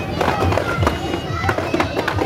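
Drum strokes in a running rhythm of about three a second, with voices singing or chanting over them.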